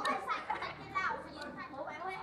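Several people's voices talking and calling out at once, quieter than the nearby speech, in fairly high, lively tones.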